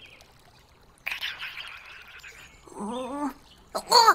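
Cartoon sound effects: a soft whoosh starts suddenly about a second in, then a short strained vocal grunt from a cartoon character comes near the end.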